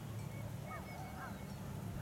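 Faint bird calls: a few short notes that rise and fall, about half a second in, over a low steady background hum.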